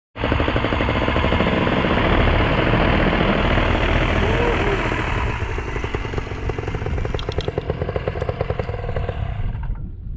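Paramotor engine and propeller running loud and steady. It eases off a little about halfway through and cuts out suddenly just before the end.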